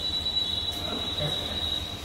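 A steady, high-pitched whine held on one note, which stops near the end, over low room noise.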